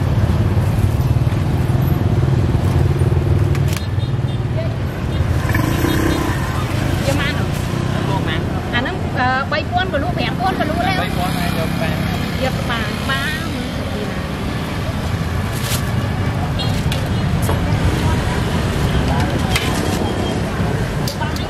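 Busy street-market ambience: a steady low rumble of motorbike and road traffic, with people talking nearby, clearest through the middle of the stretch.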